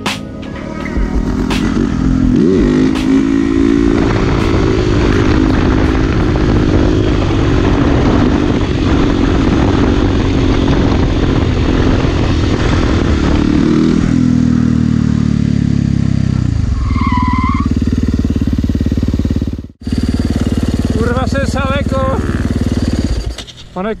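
Supermoto motorcycle's single-cylinder engine with an FMF exhaust, revving up about two seconds in and held at high revs, with the front wheel up in a wheelie. Around the middle the revs drop in steps to a lower, steady run, with a brief cut-out near the end.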